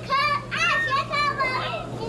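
A toddler babbling in a high, sing-song voice: about four short vocal bursts in a row, with no clear words. A steady low hum runs underneath.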